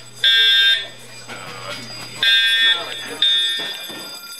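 Building fire alarm horn sounding for a fire drill, in half-second blasts: one just after the start, then after a pause two more a second apart, the last cut short. The blasts come in threes with a longer gap between groups, the evacuation pattern.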